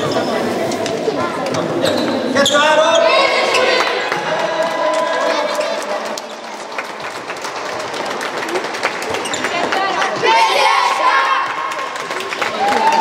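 Children's voices chattering and calling out in a reverberant sports hall, with scattered knocks on the wooden floor throughout.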